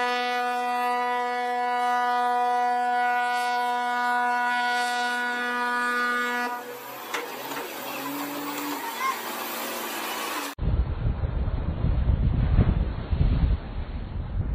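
A ship's horn sounds one long, steady blast lasting about six and a half seconds, then stops. After a cut, wind buffets the microphone over breaking surf.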